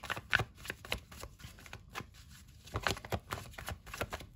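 A deck of tarot cards being shuffled in the hands: a quick run of soft card clicks and slaps that thins out briefly past halfway, then picks up again.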